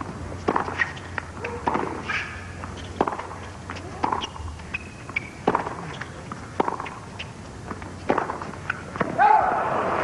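A tennis rally on a hard court: sharp racket strikes on the ball, about one a second, with softer bounces between. Near the end there is a short cry, and the crowd starts to applaud as the point ends.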